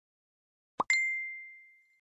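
A short pop, then a single bright chime that rings out and fades away over about a second, the sound effect of an animated logo sting.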